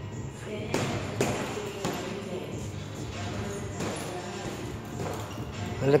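Boxing-glove punches landing on a heavy punching bag: a few separate hits, the loudest about a second in, with music playing in the background.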